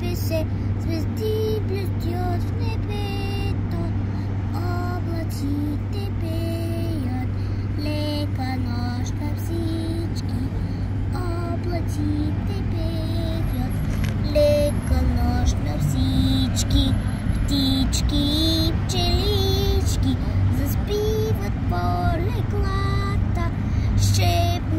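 A slow lullaby-style song, a high voice singing a gentle melody, over a steady low hum.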